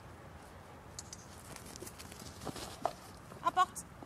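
A few faint taps, then near the end a brief, high-pitched two-part vocal call.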